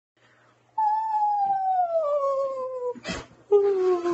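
A woman yawning aloud: a long drawn-out vocal tone sliding steadily down in pitch for about two seconds, a short noisy breath, then a second, lower yawning tone that also falls.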